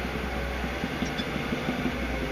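A heavy diesel engine idling steadily, a low even rumble.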